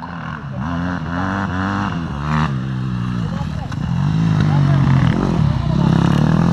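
Enduro motorcycle engine heard from the rider's helmet while riding, its revs rising and falling with the throttle; it gets louder from about two-thirds of the way in.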